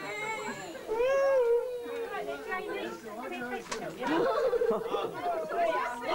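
Family chatter: overlapping voices of an adult and young children talking and exclaiming, with a drawn-out high-pitched call about a second in.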